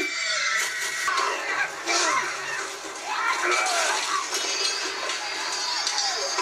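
Soundtrack of a battle scene playing: music with men shouting and screaming.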